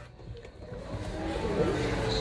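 Faint background music with a low ambient hum, growing louder about a second in.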